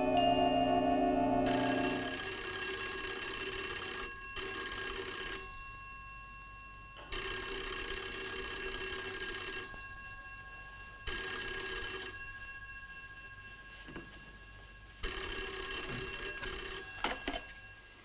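Telephone bell ringing in repeated rings about every four seconds, each starting sharply and dying away. Near the end the ringing stops and a few clicks follow as the receiver is picked up.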